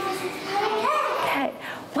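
A class of young children chanting a line of a rhyme together, many voices overlapping.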